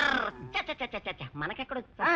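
A loud, raspy, high-pitched vocal cry, followed by a quick run of short voiced syllables at about eight a second.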